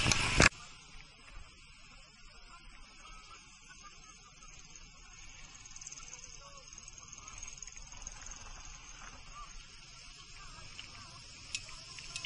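A loud rush of noise cuts off suddenly about half a second in. After it comes a faint, steady, high-pitched insect buzz from roadside vegetation, growing a little about halfway through, with a few faint short chirps.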